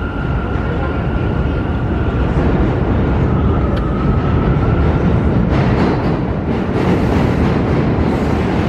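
New York City subway train running on the tracks with a steady rumble and a thin high whine in the first half, growing a little louder and hissier in the second half.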